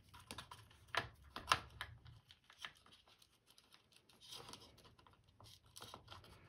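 Faint, scattered clicks and rustling of small hobby supplies being handled and shifted about while rummaging in a box, with a few sharper clicks in the first two seconds.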